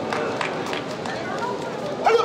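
Bare feet slapping on the taekwondo competition mat as the fighters bounce and step, about two to three slaps a second, under voices calling out.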